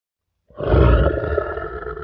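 A lion's roar sound effect that starts suddenly about half a second in, loudest at first and then slowly fading.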